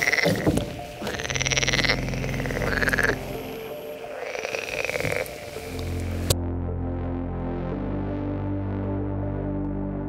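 Frogs croaking at night: several drawn-out calls over a steady ambient music bed. About six seconds in, the frog calls cut off abruptly and only the slow ambient synth music continues.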